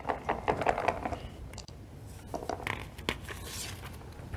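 Paper rustling with scattered small clicks and taps as a draw card is pulled from a box and handled on a table.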